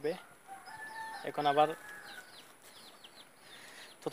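A distant rooster crowing, one long call of about a second and a half, with small birds chirping throughout. A short spoken syllable falls in the middle of the crow.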